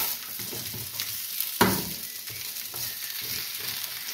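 Sliced potatoes sizzling as they fry in a pan, while a metal slotted turner scrapes and flips them against the pan, with a sharp clack a little over a second and a half in.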